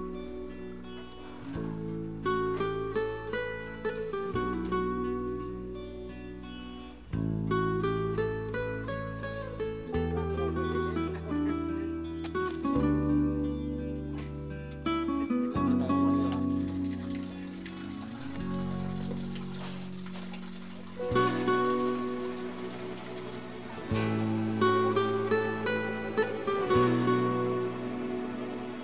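Instrumental background music: plucked string notes over held bass notes that change every couple of seconds.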